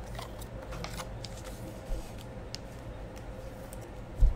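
Trading cards being handled: faint scattered clicks and scrapes of card stock against card stock over a steady low hum.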